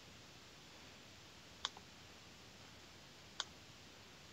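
Two sharp single clicks of a computer mouse, one about one and a half seconds in and another nearly two seconds later, over quiet room tone.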